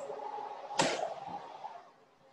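Oven opened to take out a dish: a drawn-out sliding sound from the door or rack, with one sharp clank just under a second in.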